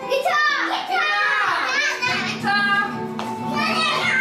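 Young children shrieking and calling out excitedly, their voices sweeping up and down in pitch, over music with steady held notes.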